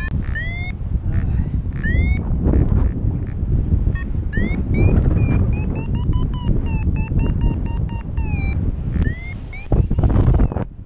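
Paragliding variometer beeping in short rising chirps, a few spaced beeps and then a quick run of them in the middle, signalling that the glider is climbing in lift. Steady wind noise rushes on the microphone underneath.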